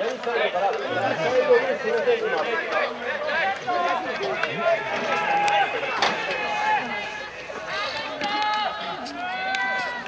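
Many voices of American football players chattering and shouting over one another. In the second half come longer, drawn-out shouted calls, several near the end.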